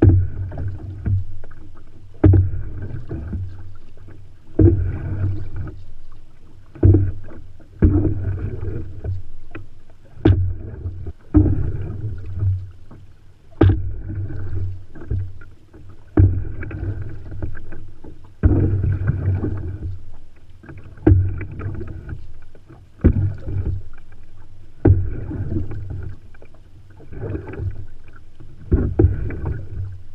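Paddle strokes from an open canoe: about one every two seconds, each starting sharply and then fading in a swirl of water along the hull.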